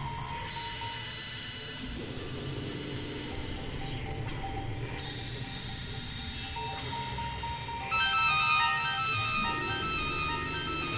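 Experimental electronic drone music from synthesizers: layered steady tones over a low rumbling bed. About eight seconds in, a cluster of high, steady tones comes in and the music gets louder.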